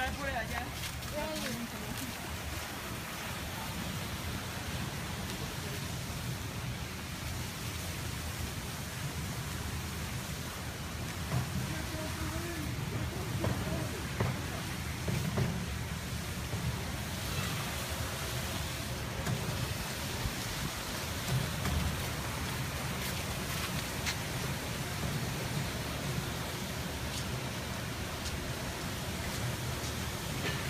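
Steady outdoor background noise with a low rumble, and faint voices of people nearby now and then.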